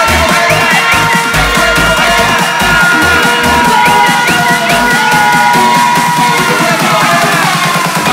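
Vina house (Vietnamese house) DJ mix: an electronic dance track with a pounding kick drum and sustained synth lines. About halfway through, the kick drops out under a fast repeating drum roll that builds up.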